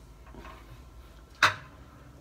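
A single sharp knock about one and a half seconds in, against quiet room tone.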